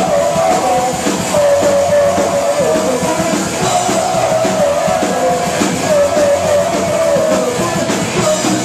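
Punk rock band playing live: electric guitars, drum kit and sung vocals, loud and continuous.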